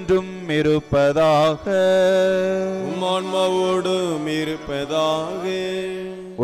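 A priest chanting a liturgical prayer in long, held notes that slide between pitches, over a steady keyboard drone.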